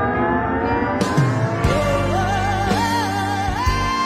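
Live rock band: a lap steel guitar glides slowly upward over sustained keyboard chords, the drums and full band come in about a second in, and a woman's wordless vocal with wide vibrato enters shortly after, climbing in pitch.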